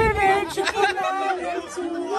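Voices talking and chattering, with no clear words.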